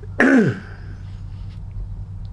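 An elderly man coughs once into his fist, clearing his throat: a single short, loud burst with a falling pitch about a quarter of a second in.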